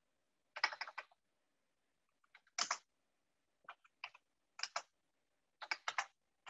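Computer keyboard being typed on: short, irregular bursts of key clicks with gaps between them.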